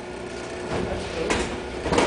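Three short clatters, a little over half a second apart, over a low rumble.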